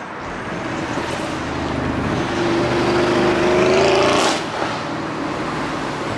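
A car engine passing close by, loudest about four seconds in, over a steady rush of road noise.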